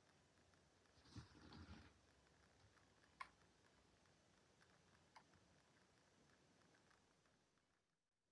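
Near silence: room tone, with a faint soft rustle about a second in and two small clicks a couple of seconds apart.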